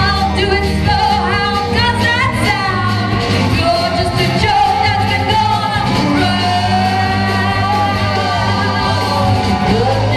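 Alt-country rock band playing live, with acoustic and electric guitars, bass and drums, and a voice singing over them, heard from the audience in a large hall.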